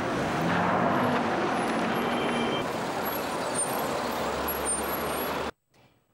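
A car running: a steady rushing rumble that cuts off abruptly about five and a half seconds in.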